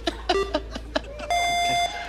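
Game-show countdown timer: a short electronic beep for one of the final seconds, then a longer, higher electronic tone of about half a second, beginning just past the middle, that signals the 30-second memorising time is up.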